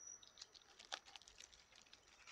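Near silence: a few faint, light clicks and rustles, with a faint high insect trill that fades out right at the start.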